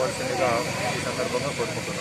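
A man speaking in an interview, over a steady background hiss with a faint high-pitched tone.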